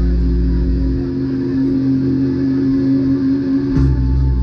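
Live rock band on stage, guitar-led: the deep bass notes drop out about a second in, leaving a long held guitar note, and a sharp hit just before the end brings the low notes back in.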